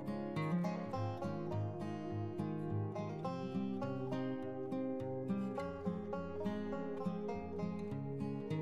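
Instrumental background music with plucked acoustic-guitar-like strings, quieter than the narration around it.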